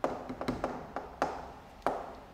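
Chalk writing on a chalkboard: about half a dozen sharp, irregular taps and short strokes as a word is written.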